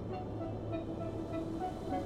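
Film-trailer sound design: a low steady hum under a slowly rising wash of noise, with short scattered tones like electronic beeps or garbled transmission.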